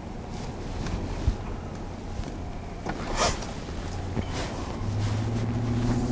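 Ram pickup's Jasper-built 5.7 Hemi V8 heard from inside the cab while driving: a steady low engine drone under road noise, with a brief rush of noise about three seconds in. About five seconds in, the engine note gets louder and climbs as the truck picks up speed.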